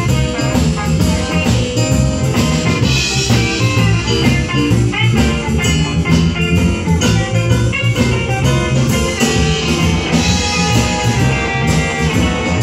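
Live band playing: electric guitar, bass, keyboard and drum kit.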